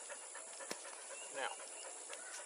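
Steady high-pitched chorus of insects, with a single sharp click about two-thirds of a second in.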